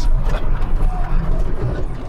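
John Deere 7810 tractor's six-cylinder diesel engine running steadily under way, heard inside the cab as a loud, low rumble.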